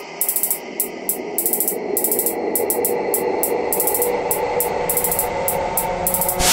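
Electronic intro music: irregular stuttering bursts of high, glitchy static crackle over a steady synth drone, swelling in level over the first couple of seconds and then holding.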